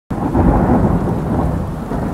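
A loud, low rumble with no clear pitch, running steadily.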